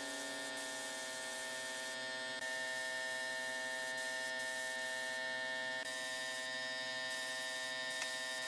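A steady, even-pitched hum over a hiss. The hiss thins briefly a few times.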